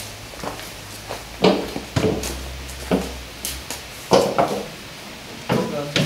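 Rusty metal wheelbarrow being handled and lifted onto a Land Rover's load bed: a series of irregular clanks and knocks, several of them ringing briefly.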